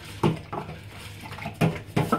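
Dishes and cutlery being washed in a kitchen sink, knocking and clinking in several short, sharp sounds.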